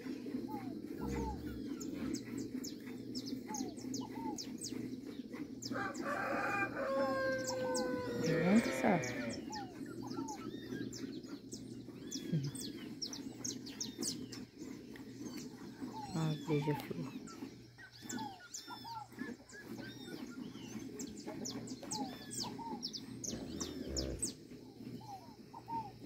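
A rooster crows once, about six seconds in, a call lasting two to three seconds, while small birds chirp throughout.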